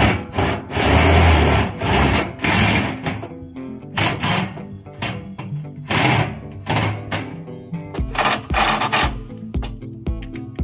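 Background music, with a DeWalt cordless drill running over it in several bursts of a second or two, the longest near the start.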